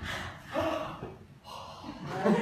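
Short non-verbal vocal sounds from a person: two brief pitched gasps or laughs in the first second, then quieter breathy sounds.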